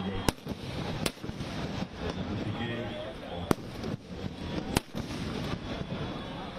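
Firecrackers bursting in a burning Ravana effigy: four sharp bangs spread over a few seconds, with voices underneath.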